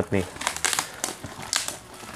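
Clear plastic packaging film crinkling and rustling in irregular bursts as hands pull and crumple it off a cardboard shoe box.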